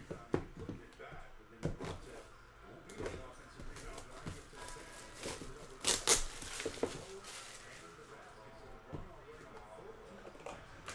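Plastic shrink-wrap being torn and peeled off a cardboard trading-card box, crackling and crinkling in irregular bursts, loudest about six seconds in.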